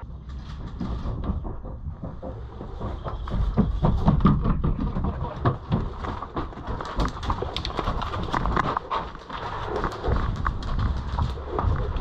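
Footsteps on dirt and the clatter of carried gear as an airsoft player moves through a course, an uneven run of scuffs, clicks and knocks over a steady low rumble.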